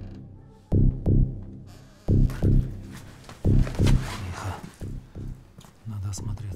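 Suspense film score built on a low heartbeat-like double thump, about four beats repeating every second and a half or so, fading somewhat towards the end, with a faint noisy swell above it in the middle.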